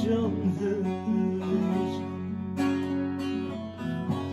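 Nylon-string classical guitar and bağlama (long-necked Turkish lute) playing an instrumental passage of a Turkish folk tune together, plucked and strummed, between sung lines.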